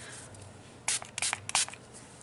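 Makeup setting spray misted onto the face from a pump bottle: five or six quick, short spritzes in a row, about a second in.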